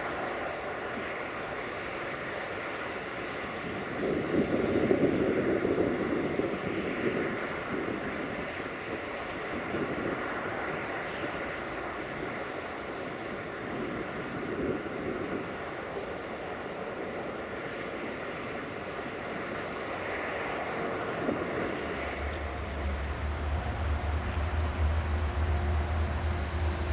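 Freight train running along the track at a distance, a rumble of wagons that swells and fades, with wind on the microphone. About 22 seconds in, a steady low hum starts.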